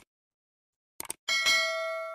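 Subscribe-button sound effect: a couple of quick mouse clicks about a second in, then a bright bell chime that rings on and slowly fades.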